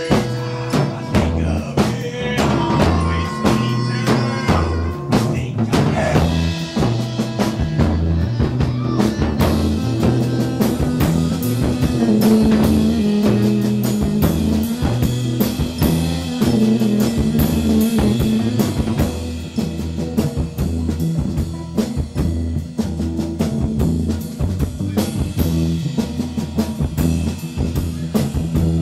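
A rock band playing live and loud, with a drum kit beating steadily under amplified electric guitar and sustained low bass notes.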